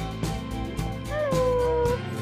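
Background music, with one held, gliding high note entering about a second in and sustained to the end.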